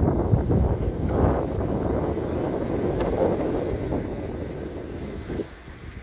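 Wind buffeting the microphone: a gusty, rumbling rush that eases off near the end.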